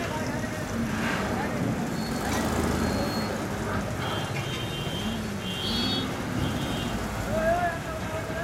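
Busy ferry-ghat bustle: a steady low engine rumble with people's voices calling out over it. Two short high-pitched beeps come in the middle, and a louder shout comes near the end.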